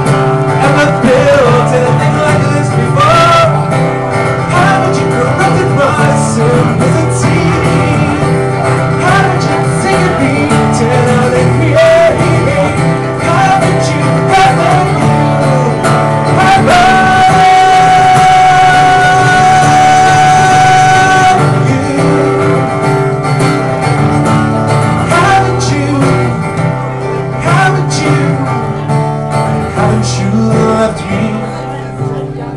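A man singing live while strumming an acoustic guitar, the sung line held on one long high note for about four seconds past the middle.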